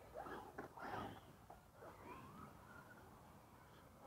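Near silence: faint outdoor background, with a few soft rustles in the first second.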